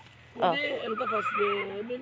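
A short, quavering animal call about a second in, heard together with a woman's drawn-out "aah".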